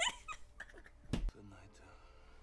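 Women laughing: a high-pitched, wavering laugh trails off at the start, then a short stifled burst of laughter about a second in.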